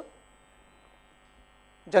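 Faint steady electrical hum with a thin, steady high tone, heard in a pause between a man's lecture speech, which resumes just before the end.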